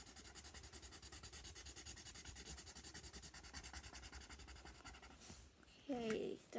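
Felt-tip marker scribbling on paper in rapid, even back-and-forth strokes, colouring in an area. It is faint and stops about five seconds in.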